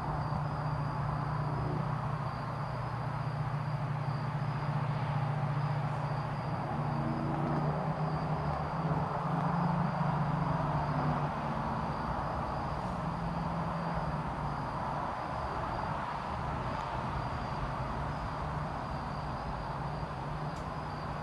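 Outdoor night ambience: a steady high insect trill, as of crickets, over a louder low mechanical hum that wavers slightly.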